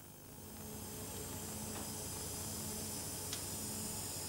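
Steady hiss with a low hum from a wafer-stepper lithography test rig, swelling in over the first second. There is one faint click about three seconds in.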